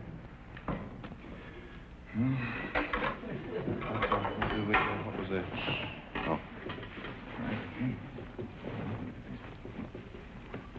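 Indistinct voices and wordless vocal sounds, loudest from about two to six seconds in, then quieter.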